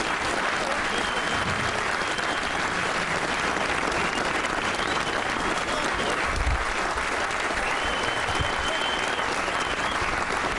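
Audience applauding steadily, a large crowd clapping without a break.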